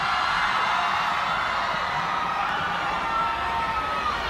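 Club concert crowd cheering and screaming, with a few long, high shrieks held over the din.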